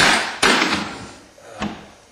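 Two loud sharp bangs about half a second apart, each ringing out briefly, followed by a softer knock.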